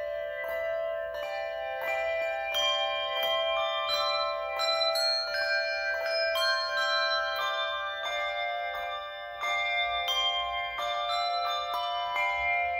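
Handbell choir playing a piece: handbells struck in steady succession, each note ringing on under the next in overlapping chords.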